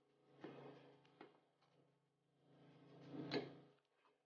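Faint sounds of a spatula stirring and scraping thick, sticky cornstarch dough in a small saucepan. There are a few soft scrapes, then a longer, louder one about three seconds in.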